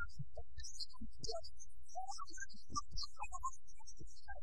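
A low steady hum on the film soundtrack, with faint scattered short sounds above it.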